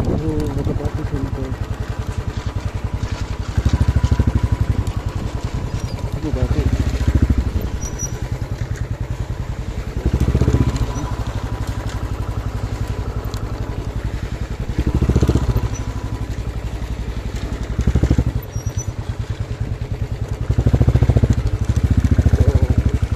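Royal Enfield motorcycle's single-cylinder engine running at low road speed with a steady rapid beat. It swells in short surges every three to five seconds as the throttle is opened.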